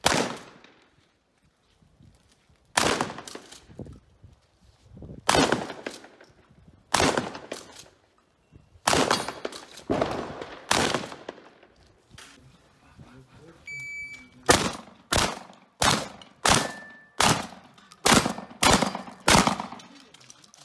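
12-gauge competition shotgun firing on a practical shooting stage. Shots come a second or two apart through the first half, each with a ringing tail, then a fast string of about nine shots roughly every half second near the end. A brief high tone sounds just before the fast string.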